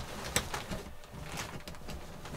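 Irregular sharp metallic clicks and clinks from hand work on a spoked wheel, its parts and tools knocking together.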